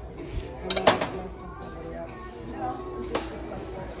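Hard objects knocking and clinking together as secondhand items are handled and picked through, with a couple of sharp knocks about a second in and another a little after three seconds, over a murmur of voices.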